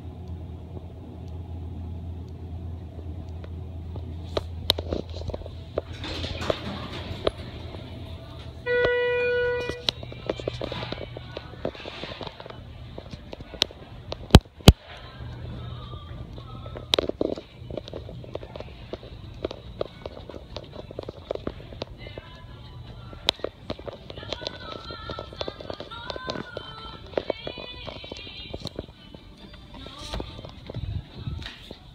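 Background music in a shop over a low hum, with a single loud electronic beep lasting about a second about nine seconds in, and two sharp clicks about five seconds later.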